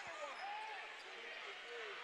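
Faint live court sound of a basketball game in an arena hall, with one short knock just after the start and a few faint pitched sounds.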